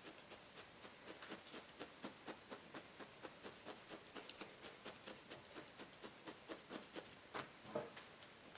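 A single felting needle stabbing repeatedly through loose wool fibres into a dense solid-wool felting pad, giving faint, even ticks about four a second, with one louder click near the end.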